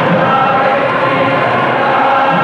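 A group of voices singing together in long, held notes, a choir-like devotional chant.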